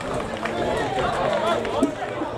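Indistinct shouts and calls of players and spectators at a football match, with a sharp knock near the end.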